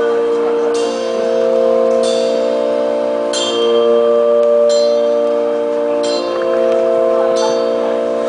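Live rock band playing an instrumental passage of sustained chords, which change about every second and a half, with a bright high hit at each chord change.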